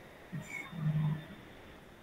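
A person's brief low hum, steady in pitch and about half a second long, preceded by a couple of faint short sounds.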